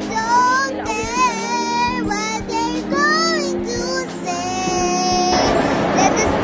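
Song with a high singing voice carrying a bending, ornamented melody over steady held chords; the music cuts off abruptly about five and a half seconds in, giving way to a noisy background of voices.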